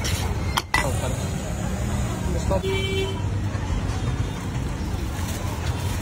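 Roadside traffic noise, a steady rumble of vehicles, with voices in the background and a short vehicle horn toot about two and a half seconds in.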